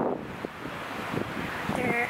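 Wind buffeting the camera's microphone outdoors, a rough, uneven rushing, with a brief pitched voice sound near the end.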